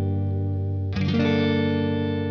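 Electric guitar played through the J. Rockett Airchild 66 compressor pedal: a held chord rings on, and about a second in a new chord is struck that sustains long and evenly.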